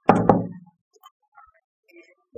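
Two quick knocks close together, with a short ring: a small paint jar knocked down onto the tabletop, followed by faint handling clicks.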